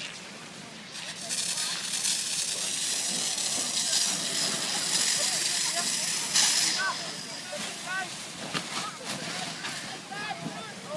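Fire hose jet spraying water onto a burning fishing boat: a loud hiss of spray and steam starts about a second in and dies down after about six and a half seconds. Crackling flames and voices remain beneath.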